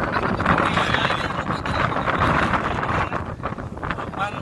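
Wind buffeting the microphone: a loud, rough rush of noise with no clear tones.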